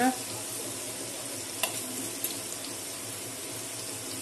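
Steady hiss of hot tempering oil with green chillies sizzling in a pan, with two faint clicks about a second and a half and two seconds in.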